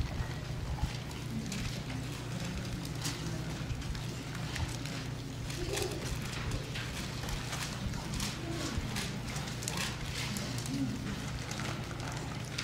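Pages of a Bible being leafed through, an irregular scatter of short crisp rustles and taps, over a steady low hum and a faint murmur of voices.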